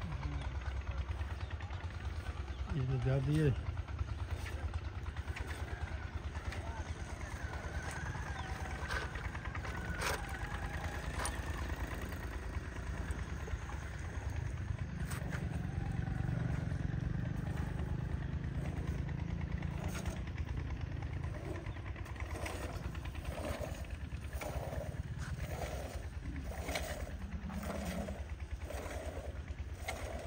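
A small engine runs steadily throughout, low and continuous. Near the end, hand-milking squirts milk into a plastic bucket in a regular rhythm, a little more than once a second.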